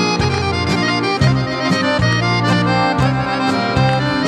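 Accordion playing the melody of a Serbian folk tune over a folk orchestra of violins, double bass and drums, in an instrumental break with no singing. Bass notes change about every half second under steady drum strokes.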